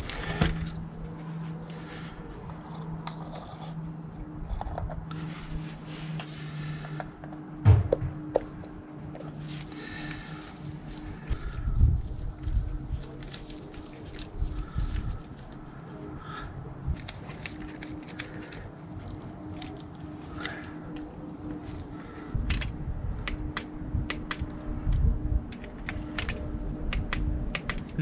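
Scattered light clicks and rubbing of small metal parts and a cloth as the oil filter cover is wiped clean and a new O-ring is fitted, over a steady low hum.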